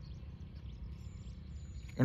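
Faint outdoor background noise, mostly a low rumble, with a thin, faint high whistle-like tone for about a second near the middle.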